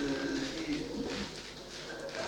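A woman's voice drawing out a single hesitant syllable, low and soft, which fades within about half a second into a quiet pause in her speech.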